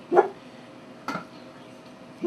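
A dog barks once, short and sharp, just after the start. About a second in comes a light clink as a lid is set on a stainless steel stockpot.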